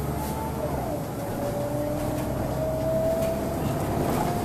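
Wright Solar single-decker bus under way, heard from inside: engine and road rumble with a ZF automatic gearbox whine that rises slowly and steadily in pitch from about a second in as the bus gathers speed.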